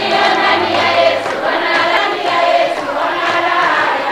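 A group of women singing together, many voices at once, in a dull, old-sounding recording.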